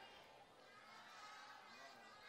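Near silence: faint room murmur from a seated audience.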